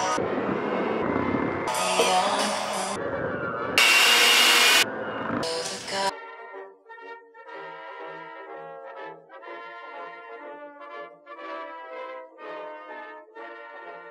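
Electric hand mixer running on low, beating cookie dough in a glass bowl, with several louder bursts over the first six seconds. Then the mixer stops and soft background music with a light beat carries on.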